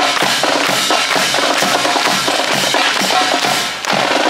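Marching band playing on the move: brass, including sousaphones and saxophones, over marching bass and snare drums keeping a steady beat. The sound dips briefly just before the end.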